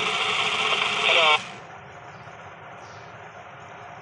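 Talking parrot toy's small motor whirring as it flaps its wings, a steady buzz with a brief snatch of its voice playback, cutting off suddenly about a second and a half in. Then only a low steady hum.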